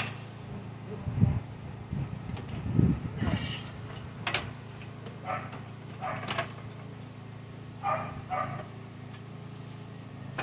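Aluminium ladder and wooden blocking being shifted and set on uneven ground: two dull thuds in the first three seconds, then a few sharper knocks and clanks.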